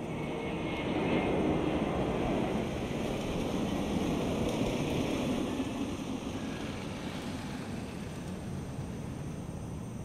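A motor scooter passing on the street, its engine noise swelling over the first second or two and slowly fading through the second half.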